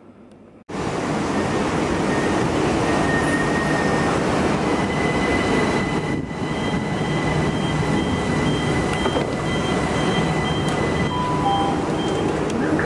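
Passenger train at a station platform: a loud, steady rumble and hiss with faint thin high whining tones above it. The sound cuts in suddenly under a second in.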